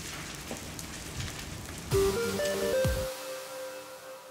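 Crackling of a car fire for about two seconds, then a loud short logo jingle: a hit with a falling low swoop and a few tones stepping upward, which rings on and fades.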